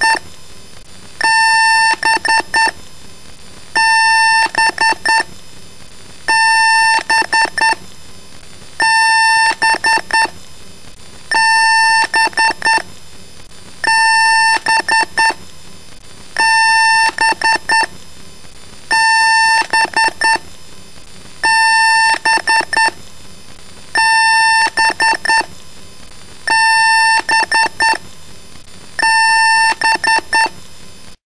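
Repeating electronic beeps: one long beep followed by a quick run of about five short beeps, the same pattern coming round about every two and a half seconds.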